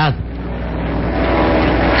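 Radio-drama sound effect of an airplane's engine drone, steady and swelling louder over the two seconds.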